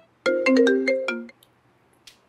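Mobile phone ringtone: a short melody of quick, stepping notes lasting about a second, then it stops as the call is answered.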